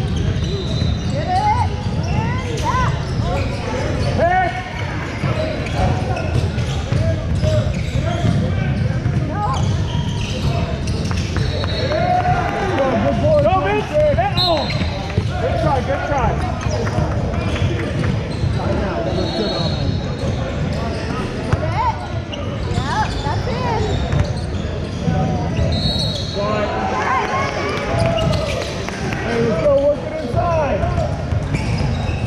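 Basketball game sounds in a large gym: a ball bouncing on a hardwood court, with the voices of players and spectators throughout. There are a few short, high, steady tones partway through.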